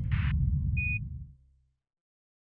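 Closing sound design of a soundtrack: a deep low rumble fading out over about a second and a half, with a brief burst of static near the start and a single short high beep just before a second in.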